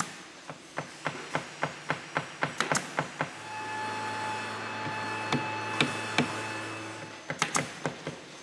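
Woodworking in a furniture workshop: quick, even knocks on wood, about three or four a second. About three seconds in, a machine starts a steady hum for about four seconds while single knocks go on, and a few more knocks come near the end.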